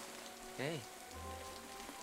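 Steady rain falling, an even hiss, with soft sustained notes of a music score underneath.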